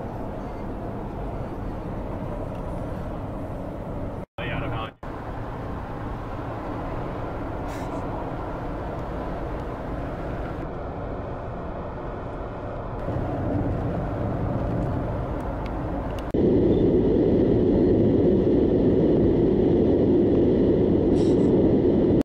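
Steady noise of a car driving, heard inside the cabin, in several spliced pieces with two brief dropouts a few seconds in; it steps up in loudness twice, loudest in the last few seconds.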